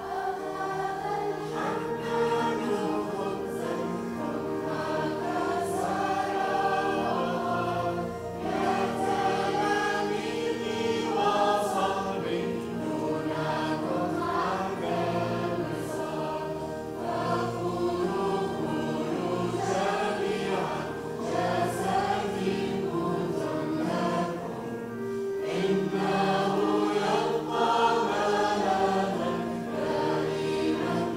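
Mixed choir of girls' and men's voices singing a church hymn in phrases, over steady held chords.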